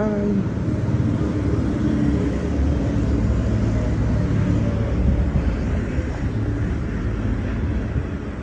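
2003 Toyota Camry LE engine idling steadily with the hood open, a constant low hum.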